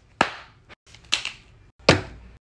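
Three sharp knocks, each with a short ring, spaced about a second apart and split by abrupt cuts, as objects such as a plastic tub are set down on a wooden table.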